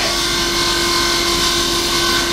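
Table saw running, a steady motor hum under a constant high hiss.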